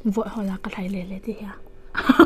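A woman's soft voice in short murmured phrases, over a faint steady hum.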